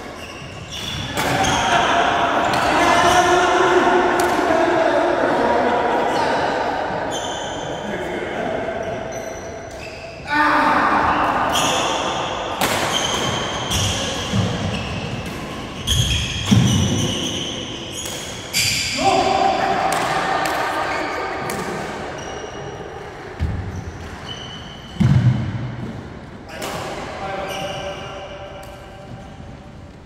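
Badminton doubles rally on a sprung wooden court: sharp racket strikes on the shuttlecock, brief shoe squeaks and footfalls, echoing in a large hall. A few heavier thuds of landing feet stand out, the loudest about 16 and 25 seconds in.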